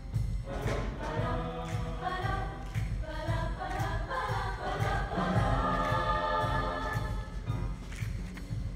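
Mixed show choir singing in harmony over an accompaniment with a steady beat, holding a long chord in the second half.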